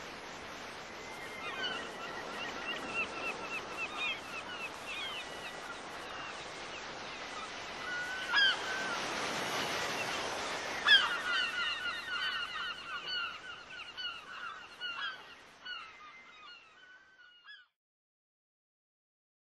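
Seagulls calling over the steady wash of sea surf, with a louder surge of surf about nine seconds in. From about eleven seconds in the calls come in a quick run, then the whole fades out near the end.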